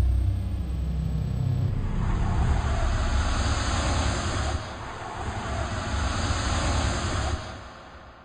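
A sound effect for an animated logo reveal: a deep rumble, joined about two seconds in by a steady whooshing hiss. Both fade out together near the end.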